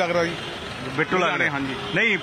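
Men's voices talking in short stretches with brief pauses, over low background noise.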